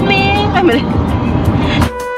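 Singing over music in a moving car's cabin, with a steady low road rumble underneath. Near the end it cuts suddenly to clean background music with a regular beat.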